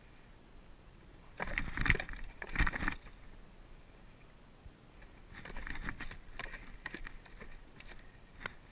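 A muskie being handled on a wooden measuring board on a boat deck: two loud bursts of thumping and scuffing between one and three seconds in, then a longer, quieter stretch of scuffs and separate knocks as the fish is held down against the board.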